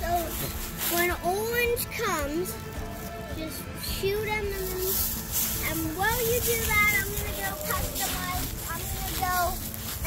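A wordless voice making sliding, swooping sounds that rise and fall in pitch in several separate phrases, over a faint steady hum.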